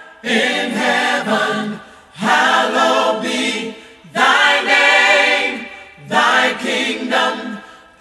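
A choir singing in four phrases of about two seconds each, each one swelling and then fading.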